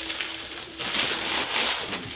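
Paper and plastic wrapping rustling and crinkling as a piece of fish is handled and unwrapped, busiest in the second half.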